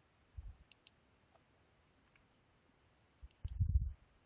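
Faint computer mouse clicks, two in quick succession a little under a second in, then a few low, soft thumps near the end.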